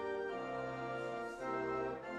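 Organ playing the song of praise in held chords that change about once a second.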